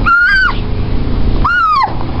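A toddler's two high-pitched squeals, one at the start and one near the end, each rising then falling in pitch. A steady low rumble runs underneath.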